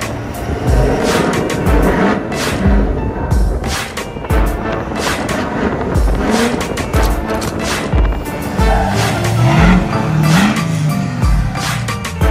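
Music with a steady beat, mixed over a lifted Ford Power Stroke diesel pickup's engine revving in rising sweeps as the truck drives and spins in the snow.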